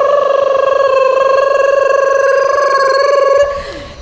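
A man's voice holding one long, buzzy, high note for over three seconds, then trailing off with a falling pitch near the end.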